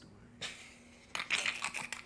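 Muffled, breathy laughter through a covered mouth: a short puff of air, then a quick run of stifled bursts about a second in.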